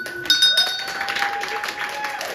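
A small wall-mounted remission bell struck by its pull cord, once just after the start, its metallic ring fading over the next second. Applause and clapping from a small group follow from about half a second in, with a long drawn-out cheer.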